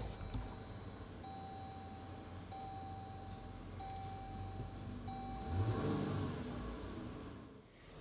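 Push-button start of a 2017 Jeep Grand Cherokee's 3.6-litre Pentastar V6, heard from inside the cabin: a click, then the engine running low at idle with a brief swell about six seconds in. A warning chime sounds four times in steady tones about a second long.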